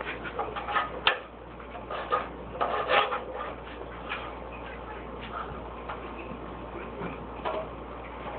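Scattered small knocks and clicks, several in the first three seconds, then fainter, sparser ticks over a low steady hum.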